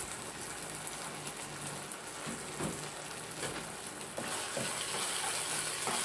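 Food sizzling in a non-stick frying pan on an induction hob, with a spatula scraping and stirring it now and then. The sizzle grows brighter about four seconds in.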